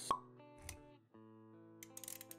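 Motion-graphics intro sound effects over soft background music: a sharp pop just after the start, a short low thud a little later, then held musical notes that run on steadily.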